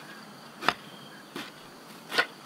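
A pronged hand hoe chopping into loose garden soil: two strokes about 0.7 s apart, the first louder. Insects chirr faintly and steadily in the background.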